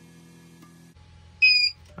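Power inverter running with a faint steady hum that changes about a second in as it shuts off. A single short, loud high-pitched beep follows. The shutdown comes from the LiFePO4 battery being run down to the inverter's low-voltage cutoff at the end of a capacity test.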